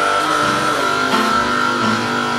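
Electric guitar playing blues through wah-wah and octave effects: a long held high note rings over lower notes that shift underneath.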